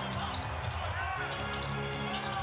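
Basketball being dribbled on a hardwood court, with steady arena background music underneath.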